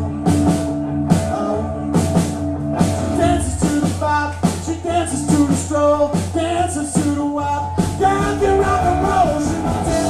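Live rock-and-roll band playing: electric guitar, bass guitar and a drum kit keeping a steady beat, with a voice singing over them from about three seconds in.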